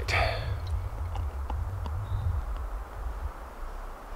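Beer pouring from a glass bottle into a copper mug, with faint scattered ticks over a low steady rumble; the mug fills to the brim with foam.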